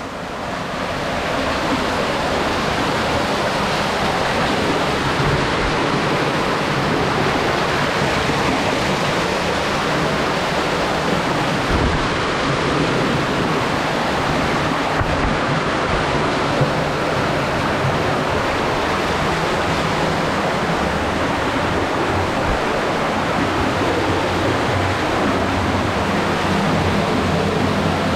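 Small waterfall cascading over rocks, a steady, unbroken rush of water close by.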